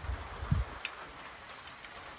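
Steady patter of light rain. A few low thumps come in the first half second, and a short click a little under a second in.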